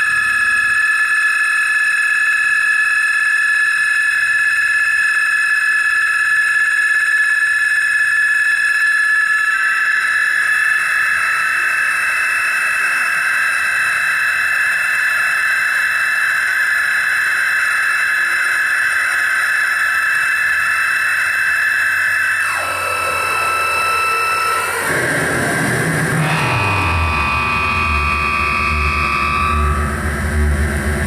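Analog synthesizer and mixer-feedback noise improvisation from a Doepfer A-100 modular synth and Moog FreqBox feedback rig. It starts as a steady stack of held high-pitched tones with hiss, which thickens about ten seconds in. About two-thirds of the way through it breaks up, a tone slides downward, and a low drone comes in near the end.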